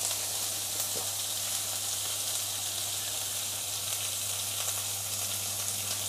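Pounded paste of shallot, garlic, chilli and belacan frying in oil in a wok over a gas flame, a steady sizzle as it is sautéed down until fragrant and the oil separates. A faint steady low hum sits underneath.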